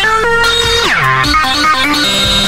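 Electronic music track with synthesizer lines; about halfway through, a synth note slides sharply down in pitch before the melody resumes.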